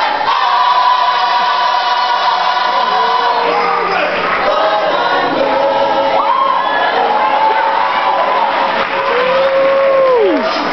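Children's gospel choir singing together, the voices held on long sustained notes, with one long note bending down and ending at the very end.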